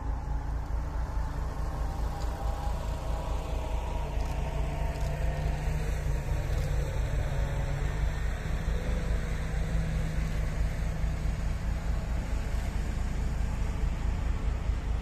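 Heavy diesel engines of a dump truck and a wheel loader working close by, a low steady hum that grows stronger through the middle. Wind buffets the microphone throughout.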